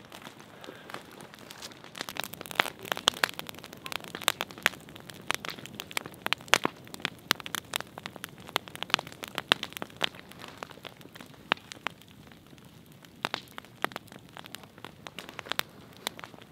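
Burning brush pile of pine and fir branches crackling, with irregular sharp pops and snaps over a faint hiss, busiest in the middle and again near the end.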